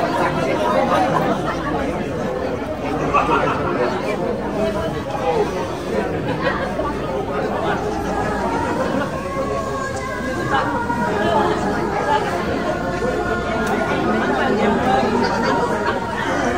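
Several people talking at once in a room: steady, overlapping conversation with no single voice standing out.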